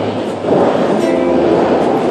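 Water jets of the Bellagio fountain rushing and spraying, a loud, dense hiss of water that swells about half a second in. Held music notes come in about a second in.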